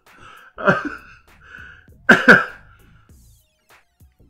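A man laughing hard in two loud bursts, one just under a second in and one about two seconds in, with quieter breathy sounds between them, then quiet.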